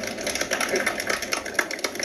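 Applause from a small audience: a dense, uneven patter of individual hand claps.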